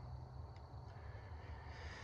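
Quiet pause: a faint, steady low hum, with a faint hiss swelling slightly near the end.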